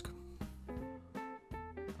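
Background music: an acoustic guitar playing single plucked notes, each ringing out and fading before the next.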